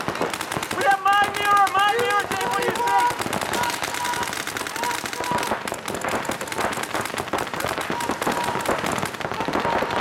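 Paintball markers firing in rapid strings of sharp pops, with shouting voices over them about one to three seconds in.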